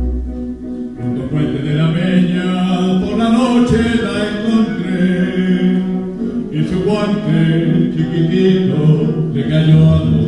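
A male solo voice singing a zarzuela number over instrumental accompaniment, with long held notes that step from pitch to pitch.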